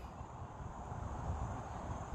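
Quiet outdoor background noise: a steady low rumble with no distinct events, and a faint steady high tone above it.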